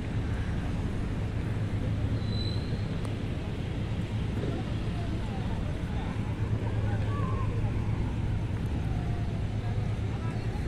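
Steady low outdoor rumble with faint distant voices, and a brief high tone about two seconds in.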